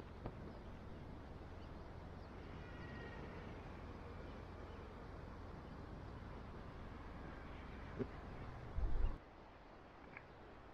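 Outdoor cliff-top ambience: a steady low rumble of wind on the microphone, with a few faint footsteps on the path and faint bird chirps about three seconds in. A brief, louder low gust of wind hits the microphone just before the end.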